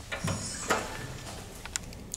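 Elevator call button being pressed: a few short sharp clicks, the loudest a little under a second in, over a low steady hum.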